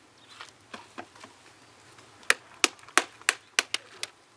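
A flat tool smacks the rind of a halved pomegranate to knock the seeds out. There are a few soft taps for the first two seconds, then sharp strikes about three a second from a little past halfway.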